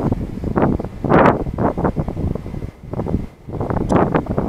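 Wind buffeting a body-worn camera's microphone: a low, rough noise that surges and drops in irregular gusts, strongest about a second in.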